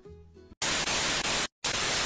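Television static sound effect: a loud, even hiss of white noise that starts about half a second in, cuts out for a split second about a second and a half in, then resumes. Soft acoustic guitar music plays just before the hiss starts.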